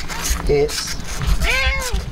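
Himalayan cat meowing: a short call about half a second in, then a longer meow that rises and falls in pitch near the end.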